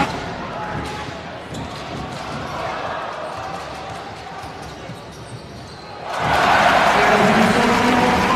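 Basketball dribbled on a hardwood court, repeated bounces over arena crowd noise. About six seconds in, the arena sound swells much louder, with voices.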